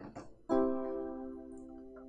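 Piano keyboard playing a single sustained chord, the four chord in the key of F (B-flat major, B♭–D–F). It is struck about half a second in and rings on, slowly fading.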